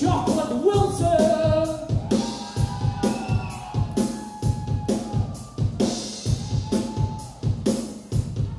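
Live rock drum kit playing a steady beat on bass drum and snare, with a voice holding long notes over it.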